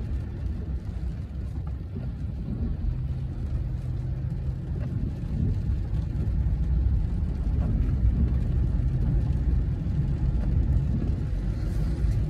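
Car driving, heard from inside the cabin: a steady low rumble of road and engine noise that grows slightly louder about halfway through.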